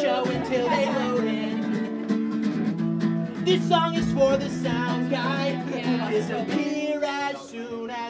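Unamplified acoustic guitar strummed in steady chords, with a voice singing over it.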